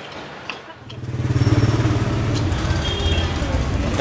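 A motorbike engine running close by. It comes in suddenly about a second in as a loud, steady low hum and keeps going.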